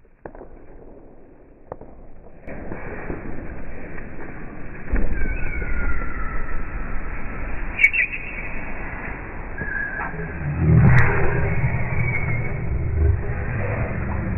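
Banana peels skidding under a person's knees across a smooth floor: a rough sliding rumble with a few short high squeaks in the middle, the rumble heaviest near the end.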